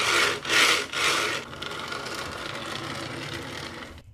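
HO-scale diecast hi-rail excavator model pushed along model railroad track, its small wheels rubbing and scraping on the rails. There are two louder scrapes in the first second and a half, then a steadier, quieter rolling rub that fades near the end.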